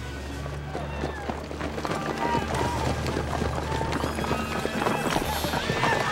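Horses' hooves galloping with many irregular hoofbeats over a low, steady music drone.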